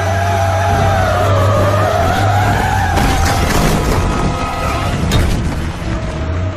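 Action-film chase sound mix: a heavy vehicle's deep engine rumble and a long wavering squeal, broken by several sharp crashes, with music underneath.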